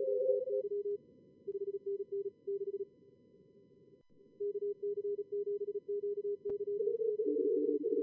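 Simulated Morse code (CW) signals from SkookumLogger's contest practice mode: fast keyed tones at a lower and a higher pitch over faint receiver hiss, sent in short runs with gaps. Near the end two stations' signals at different pitches overlap, as the two radios' audio is heard together in 2BSIQ operation; there is a single sharp click about six and a half seconds in.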